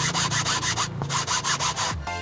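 Handheld scrubber rubbing foamy cleaner into a leather car seat in quick, even back-and-forth strokes, with a short pause about a second in.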